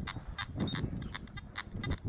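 Wind rumbling on the microphone, with a run of short, repeated electronic chirps, three or four a second, from a metal detector sounding over a target in the dug hole.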